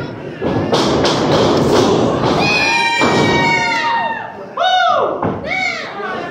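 Thuds of wrestlers' bodies hitting the ring and corner, among loud wordless yelling. In the second half come several loud shouts, each falling in pitch.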